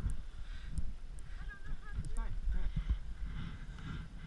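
Brief talking over a low, uneven rumble of wind and movement on a helmet camera's microphone.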